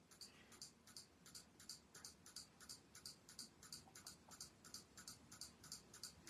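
Faint, evenly spaced computer mouse clicks, about three a second, as the GENERATE button of an online random number generator is clicked over and over.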